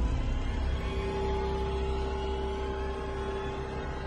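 Outro sound effect for the end-screen logo: a low rumble with a steady held tone coming in about a second in, slowly fading.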